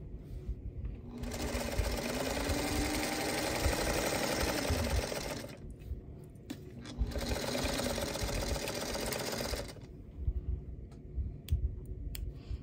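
Singer sewing machine stitching in two runs, about four seconds and then about three seconds, its motor hum rising as it speeds up and falling as it slows. A few light clicks follow near the end.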